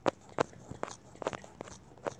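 Fingertip taps on a tablet screen while paging quickly through an e-book: a run of short, sharp taps, about two or three a second.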